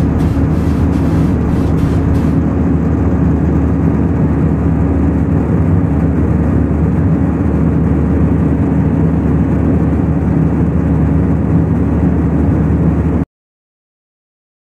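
Jet airliner cabin noise in cruise flight: a loud, steady rush of engine and airflow with a low hum underneath, heard from a window seat over the wing. It cuts off suddenly about a second before the end.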